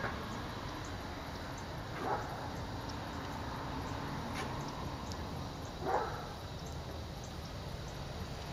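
Steady low outdoor background noise with two brief distant calls, one about two seconds in and another near six seconds.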